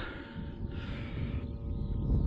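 A man breathing hard, two long breaths, with a low wind rumble on the microphone.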